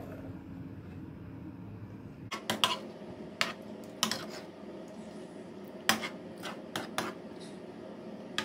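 A cooking spoon and spatula clicking and scraping against a stainless-steel pan as thick sauce is spooned over whole fish: a run of sharp, irregular taps from about two seconds in, over a faint steady hum.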